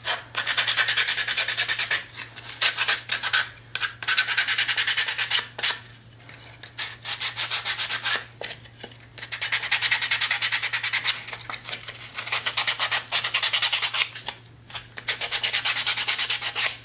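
Hand-sanding the edges of a painted wooden block with a small piece of sandpaper: fast back-and-forth scratching strokes in runs of one to three seconds, with short pauses between runs. The sanding distresses the white paint to make the block look aged.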